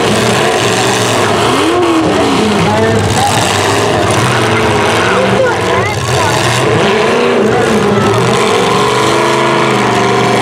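Several full-size demolition derby cars' engines revving hard through short open exhaust stacks, their pitches rising and falling over one another without a break. The din dips briefly about six seconds in.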